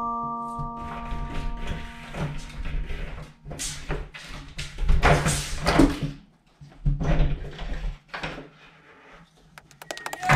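A few chime-like music notes ring and stop about two seconds in. Then come irregular thuds and scrapes, loudest around five seconds in, as a cat leaps at a wooden door, pulls down its lever handle and the door opens.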